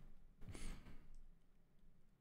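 A man's soft breathy exhale, the tail end of a laugh, about half a second in; then faint room tone.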